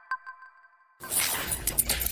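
The last notes of a chiming intro jingle: one more bell-like note struck just after the start rings out and fades almost to silence. About a second in, a sudden hissing rush with crackling clicks begins.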